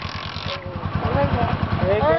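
Motorcycle engine idling with an even, rapid beat, with a brief hiss over the first half second.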